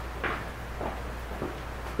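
Quiet room tone in a pause between speech: a steady low hum, with a few faint, brief sounds.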